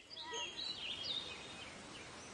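Small birds chirping a few quick, wavering calls over a faint steady outdoor hiss. The chirps cluster in the first second.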